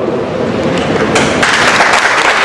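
Audience applauding, the clapping growing louder about a second in.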